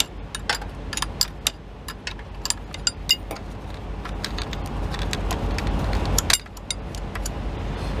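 Wrench working the bolt of a diesel truck's fan-belt tensioner adjusting rod: a string of sharp metal clicks and clinks, several a second and unevenly spaced, over a steady low rumble.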